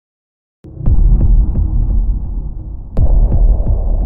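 Cinematic sound design for a TV channel ident: a deep bass rumble that starts suddenly after a moment of silence, punctuated by two heavy hits, about a second in and about three seconds in, each followed by a few faint clicks.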